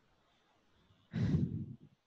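A person's sigh into the microphone: one short breathy exhale lasting under a second, about a second in.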